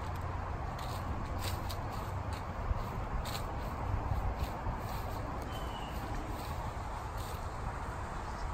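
Outdoor ambience dominated by a steady low rumble of wind on the microphone, with light rustling and footsteps through grass and fallen leaves as the filmer walks.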